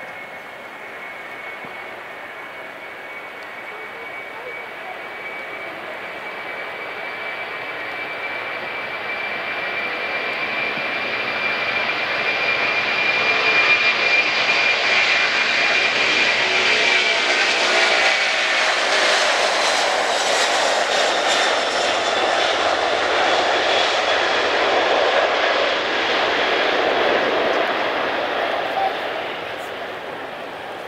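Boeing 747-400 jet engines at takeoff power during the takeoff roll, growing louder as the jumbo approaches and passes. A steady high whine drops slightly in pitch as it goes by, giving way to a broad rumble that fades near the end.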